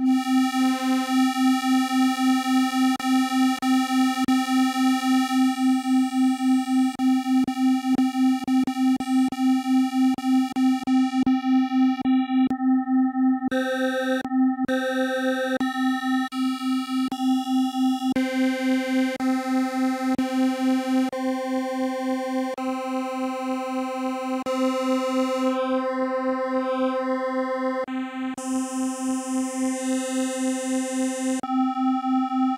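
Modal Argon 8M wavetable synthesizer sustaining a single note at one steady pitch while its wave modifier types are switched through one after another. The timbre changes every second or so, with small clicks at the switches.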